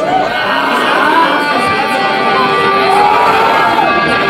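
Live heavy metal band starting a song, with electric guitars ringing out sustained notes and crowd shouting over them.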